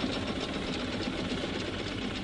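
Early motor bus engine running with a steady mechanical clatter and a low hum, even throughout.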